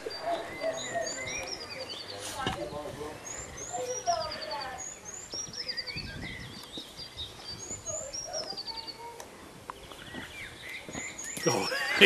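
Small birds singing: repeated high chirps and short trilled phrases that fall in pitch, recurring every second or two, over faint distant talk.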